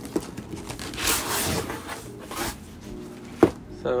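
Cardboard subscription box being opened by hand: rustling and scraping of the lid and flaps, loudest about a second in, with a sharp knock a little before the end.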